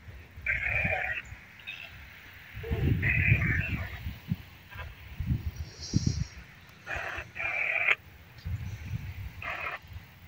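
Short bursts of tinny, radio-like sound from a phone's speaker, a spirit-box style ghost-hunting app sweeping through fragments, four or so bursts a few seconds apart. Low rumbles on the microphone come and go in between.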